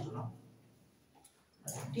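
A man's lecturing voice trailing off, a pause of about a second of near silence, then speech resuming near the end.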